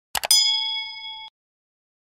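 Subscribe-button animation sound effect: two quick mouse clicks, then a bright bell-like ding that rings for about a second and cuts off suddenly.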